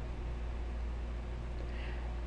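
A pause in speech: quiet room tone over a steady low hum.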